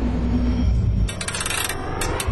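A rapid run of sharp metallic clicks lasting just over half a second, from a hand tool working on a car engine. It comes about a second in, over a low rumble.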